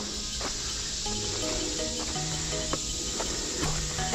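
Steady high buzz of an insect chorus, with soft music underneath playing a slow melody of held notes, and a few faint clicks.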